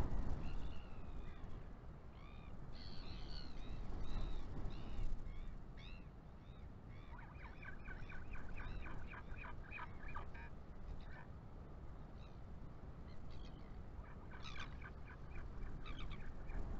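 Birds calling over low wind rumble on the microphone. There are high, arching chirps in the first few seconds, then a fast, rattling run of repeated calls from about seven to ten seconds in, and a shorter run near the end.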